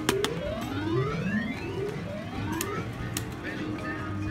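Electronic slot machine sounds: a run of overlapping rising tones with a few sharp clicks, over casino background music and chatter.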